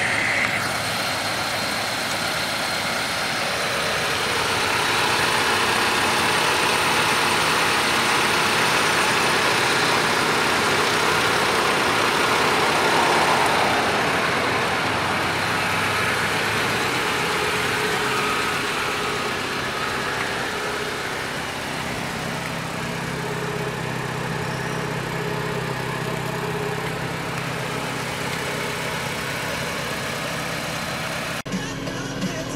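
GAZ 31105 Volga's four-cylinder engine idling steadily, heard along with a broad rushing noise that swells through the first half and eases off, leaving the low engine hum clearer.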